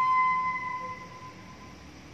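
Bamboo transverse flute holding the final long note of the tune, which sags slightly in pitch and fades out about a second in, leaving faint room noise.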